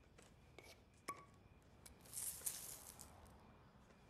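Glitter sprinkled onto a sheet of paper: a few faint light ticks, then about two seconds in a soft, high rustling hiss that fades over a second or so.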